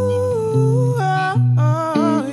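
A woman's soul voice sings a long wordless note with slight bends, shifting to other notes about a second in, with the band's low notes sustained underneath.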